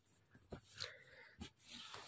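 Faint cloth-handling sounds: a few soft rustles and small taps, about three of them, as a printed shirt fabric is moved about by hand.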